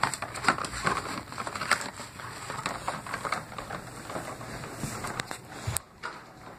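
Irregular light knocks, taps and rustles of a cardboard carrier packed with toys being handled and carried.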